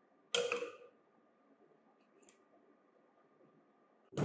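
One sharp click with a brief ringing tail, then a faint tick about two seconds later.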